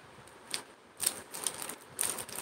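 A few light clicks, the clearest about half a second and a second in, over quiet room tone.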